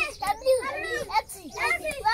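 A group of young children's voices reciting aloud together in high, sing-song syllables: a class chanting its chalkboard lesson.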